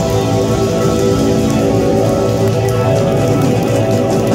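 Live rock band playing loudly: electric guitars and bass through amplifiers with keyboard, holding steady sustained notes over a noisy wash.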